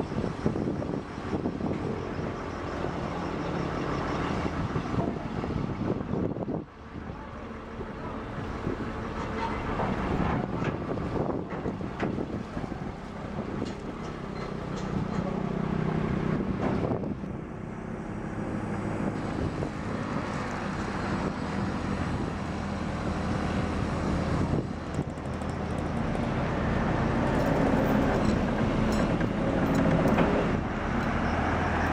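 Excavator's diesel engine running close by, a steady low hum whose note rises and falls as the machine works, with a sudden drop in loudness about six and a half seconds in.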